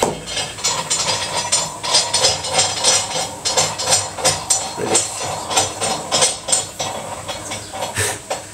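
Metal gym equipment clattering: quick, irregular metallic clicks and knocks, a few each second.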